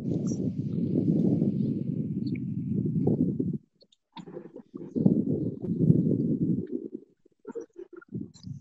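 Wind buffeting an outdoor phone microphone: two long gusts of low rumble, the second starting about four seconds in after a short lull.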